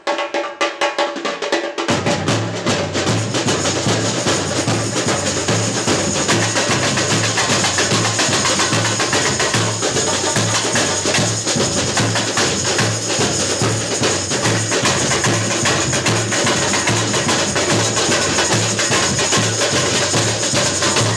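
A samba bateria of drums and shakers playing a samba groove. For about the first two seconds only the higher snare drums and shakers play, then the deep surdo bass drums come in and the full rhythm carries on.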